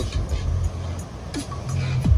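Low, steady rumble of ocean surf breaking on a rocky shore, with faint music underneath.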